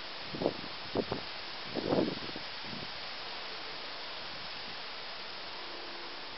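Steady wind noise and hiss on the microphone, with a few brief louder gusts in the first two seconds.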